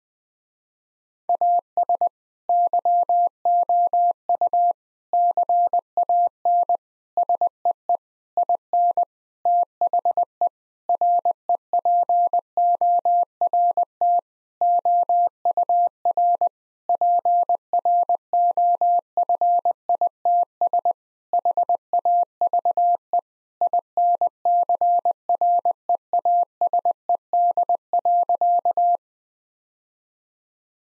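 Morse code sent at 20 words per minute as a single steady electronic tone keyed on and off in dots and dashes, starting about a second in. It spells out the sentence "As you can see in the report our profits have increased."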